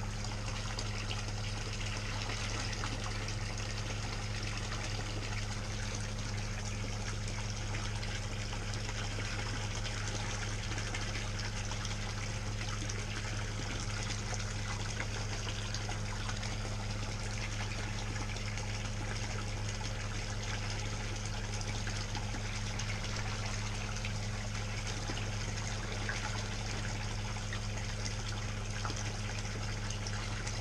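Water from a pool filter's return pipe pouring steadily into the pool pond and splashing on the surface, over a steady low hum.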